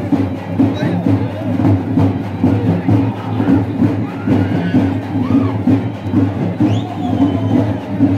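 Loud, rhythmic percussion music, with crowd voices shouting over it.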